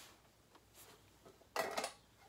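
Quiet room, then a short clatter about one and a half seconds in as a guitar effects pedal is picked up off a desk crowded with pedals.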